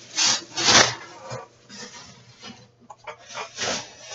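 Rummaging in a shopping bag: several short bursts of rustling and rubbing as items are handled.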